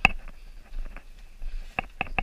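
Sharp knocks of hard gear against lava rock as a caver scrambles through a low lava tube: one loud knock at the start, fainter clicks after it, and another clear knock near the end.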